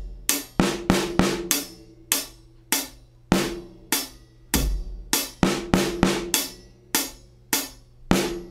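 Drum kit groove: a UFIP hi-hat keeps steady time and a bass drum thumps, while a cloth-damped snare drum lands on syncopated sixteenth-note positions: the fourth sixteenth of beat 1 and the second sixteenth of beat 2.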